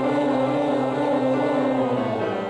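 A man singing a vocal warm-up exercise, holding one long note over the piano.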